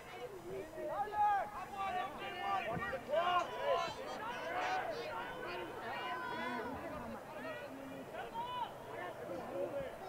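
Several voices at a lacrosse game shouting and calling out over one another, with no clear words, rising and falling in bursts throughout.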